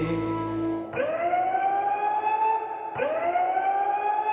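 A siren sound effect in a dance-performance soundtrack: two rising wails about two seconds apart, each gliding upward and then cutting off. Music holding a sustained note ends about a second in, before the first wail.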